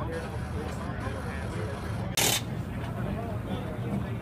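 Background chatter of people talking, over a steady low rumble, with one short, sharp noise burst a little over two seconds in that is the loudest moment.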